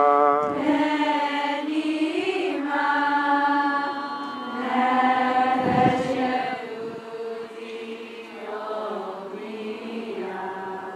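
A group of voices singing a slow song together in unison, with long held notes, growing softer in the second half.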